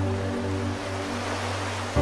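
Soft piano chord ringing and slowly fading, with a deep bass note under it, over a steady hiss of rain.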